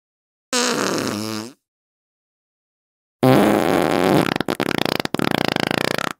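Two farts. A short pitched one comes about half a second in and lasts about a second. A longer, louder one starts about three seconds in and breaks into a rapid, fluttering sputter toward its end.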